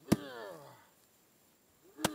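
A sharp hit, followed by a pitched tone that falls steadily over about half a second. The same hit comes again at the end, about two seconds later.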